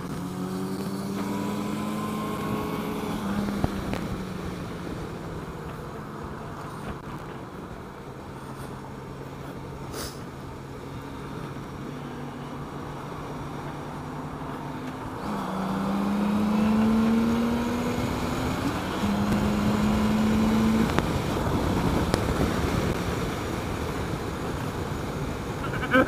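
Honda Gold Wing's flat-six engine running as the motorcycle cruises, with wind noise over it. About fifteen seconds in, the engine note rises and gets louder as the bike accelerates, then holds steady.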